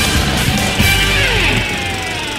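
Opening theme music of the show, starting to fade near the end.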